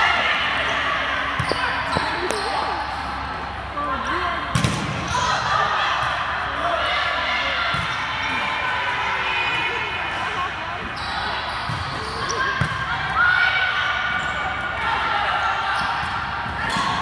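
Volleyball being played in a gymnasium: overlapping shouts and chatter of players and spectators, with several sharp smacks of the ball being hit, the loudest about four and a half seconds in.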